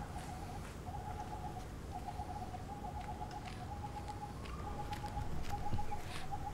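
A bird's rapid trilling call at one steady mid pitch, repeated in runs of about half a second to a second with short gaps, over faint background noise.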